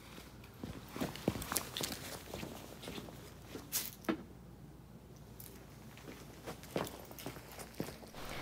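Quiet footsteps on a concrete floor, with a few light scattered knocks and clicks as a person moves about.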